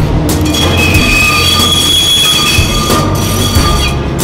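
Electric locomotive rolling past, its wheels squealing on the rails in a steady high-pitched whine that fades and returns, over a low rumble.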